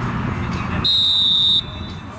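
Referee's whistle: one sharp blast of about three-quarters of a second on a single steady high note that cuts off suddenly, after a moment of players' voices.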